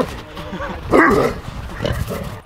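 A dog barking, loudest about a second in.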